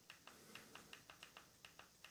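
Faint, rapid clicks, about six a second, of a TV remote's button being pressed over and over to scroll down an on-screen menu.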